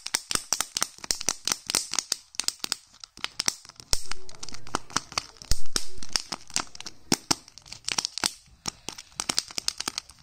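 Thin plastic wrapper on a candy egg being crinkled and torn by fingers: a dense run of sharp crackles, with a louder tearing stretch about four to six seconds in.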